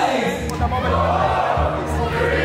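A hall crowd shouting while DJ music with deep, repeating bass notes comes in about half a second in.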